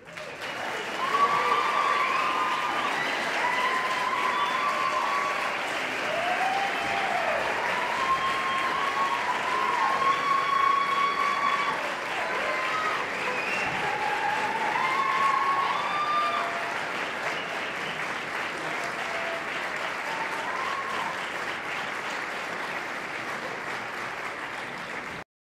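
Audience applauding, with whoops and cheering voices over the clapping. The applause starts suddenly and holds, easing a little after about sixteen seconds.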